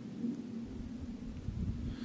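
Wind buffeting the microphone: a low rumble that picks up about half a second in, over a faint steady hum.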